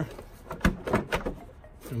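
Plastic engine cover being handled and settled into place over the engine. A few light plastic knocks and clicks come about halfway through, with rubbing and scraping between them.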